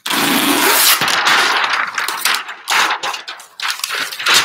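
A large sheet of flip-chart paper rustling and crackling as it is flipped over the top of the easel pad. The sound is loud and continuous for the first few seconds, then comes in shorter bursts near the end.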